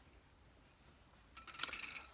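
Tambourine jingles clinking lightly as the tambourine is handled on the bench: a short cluster of small metallic clinks starting a little past halfway.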